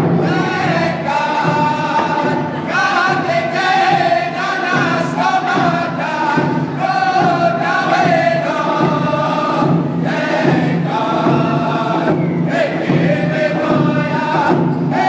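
A group of men sing a round dance song in unison to a steady beat on rawhide hand drums, holding long notes.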